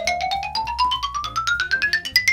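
A rapid run of mallet-percussion notes, about ten a second, climbing steadily in pitch and topping out on a high note just after the end.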